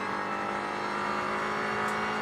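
Audi TCR race car's turbocharged four-cylinder engine under power, heard from inside the cockpit, holding a steady high-revving note.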